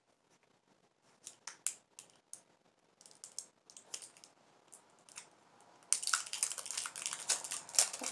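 Plastic bubble wrap crinkling and crackling as it is handled and pulled off a small cosmetics item: scattered crackles at first, then dense continuous crinkling from about six seconds in.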